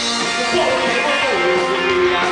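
Live rock band playing, an electric guitar to the fore, with one note sliding down in pitch about halfway through.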